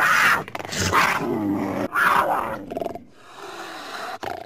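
Big-cat roar sound effect: three loud roars about a second apart, then a quieter stretch that fades out near the end.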